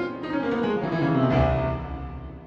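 Piano playing chords and a melodic line, with a deep bass note struck about one and a half seconds in and left to ring.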